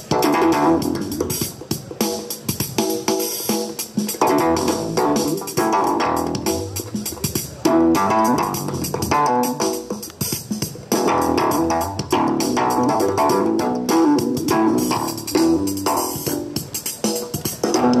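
Homemade electric broomstick instrument played through an amplifier: a continuous run of plucked, bass-guitar-like notes in a steady rhythm, with knocks as the stick is struck.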